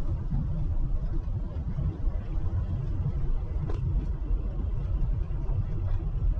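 Truck driving along a road: steady low rumble of engine and tyre noise, with a faint click a little before four seconds in.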